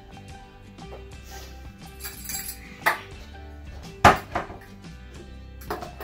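Background music with held notes, over which glassware clinks a few times as it is handled and set on a counter; the loudest clink comes about four seconds in.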